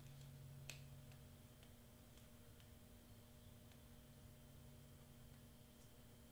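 Near silence: faint room hum with a few small, faint clicks and ticks, one sharper click under a second in. They come from a plastic syringe drawing the last bit of black ink out of a nearly empty bottle, with air starting to get in.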